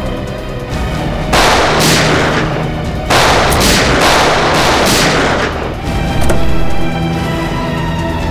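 Action-scene gunfire over a dramatic background score: about five or six loud shots, each with a short trailing echo, fired between about a second and a half and six seconds in.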